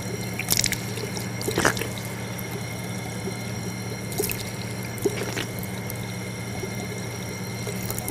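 Water running steadily from a faucet into a washbasin, with a few brief splashes as a man rinses his mouth with handfuls of water.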